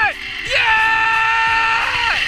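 A zipline rider's long, high-pitched scream that glides up, holds steady for over a second and falls away near the end, over background music.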